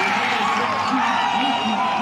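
Stadium crowd din at a college football game, a steady wash of noise from the broadcast, with faint voices underneath.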